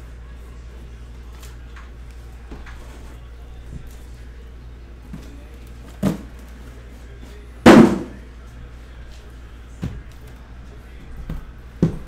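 Sealed trading-card boxes being lifted out of a cardboard shipping case and set down on a table. Four separate knocks over a faint steady hum, the loudest a heavy thud a little before two-thirds of the way through.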